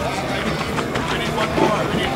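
Indistinct talking of several people, unclear words over steady outdoor background noise.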